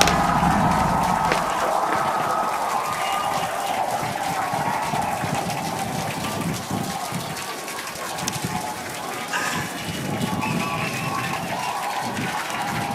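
Crowd cheering and clapping in celebration of the booster catch, a continuous roar of many voices and hands that slowly eases off.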